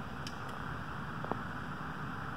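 Steady low hiss of room tone, with a few faint light clicks.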